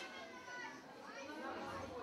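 Faint, indistinct voices of children chattering in the background.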